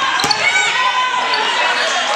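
Basketball game in a gym: a ball bouncing once on the hardwood court about a quarter second in, over a steady wash of players' and spectators' voices echoing in the hall.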